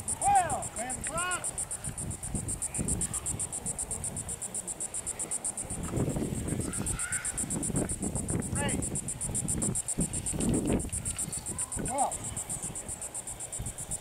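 Insects trilling in a fast, even, high-pitched pulse.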